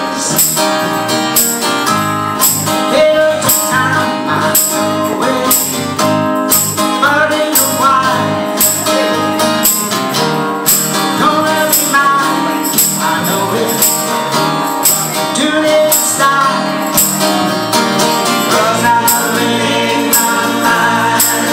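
Small live band: a man singing over guitar and electric bass, with a tambourine struck on the beat about twice a second.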